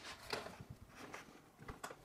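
Faint scattered knocks and light clicks as a small plywood board is set down on a SawStop jobsite table saw and its rip fence is handled.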